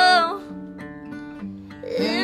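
Acoustic guitar playing with a woman's held sung note that ends about a third of a second in. The guitar then carries on alone, softer, until the singing comes back right at the end.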